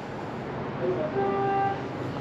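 A short, steady horn-like tone about a second in, held for roughly half a second, over a low background murmur.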